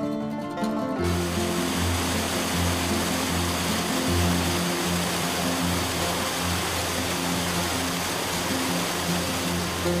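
Water rushing over a stone weir cascade, a loud steady rush that starts abruptly about a second in. Background music with sustained low notes plays throughout.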